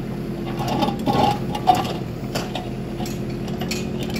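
Kubota micro excavator's small diesel engine running steadily under hydraulic load while the bucket digs, with scattered clinks and scrapes of the steel bucket against dirt and rock, busiest about a second in.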